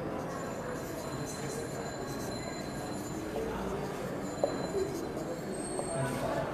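Felt-tip marker squeaking on a whiteboard in short high squeals while words are written, over a steady background hiss. A small tap sounds about four and a half seconds in.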